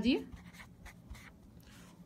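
Felt-tip marker scratching faintly across paper in short strokes as words are handwritten.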